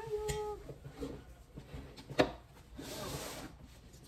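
Objects handled on a wooden desk: a hummed voice trails off at the start, then a single sharp tap about two seconds in and a short rustle of paper a second later.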